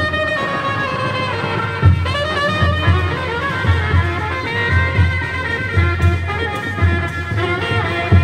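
Indian street brass band playing an instrumental passage: horns carrying a sustained melody over regular low drum beats.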